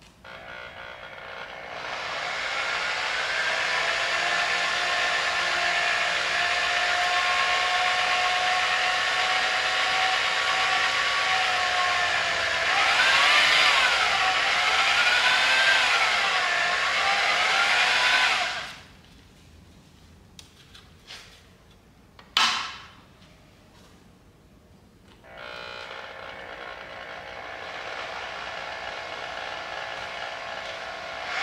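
Half-inch variable-speed electric drill driving a bead roller, running steadily with a whine that wavers in pitch for a few seconds before it stops a little past halfway. A single sharp knock follows, and a fainter steady motor sound starts again near the end.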